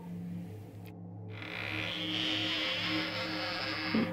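Soundtrack drone: a steady low hum, joined about a second in by a high buzzing hiss that swells and holds, then stops with a click near the end.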